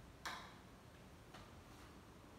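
Two light clicks of kitchen items being handled on a countertop: a sharp one about a quarter second in and a fainter one a little after a second.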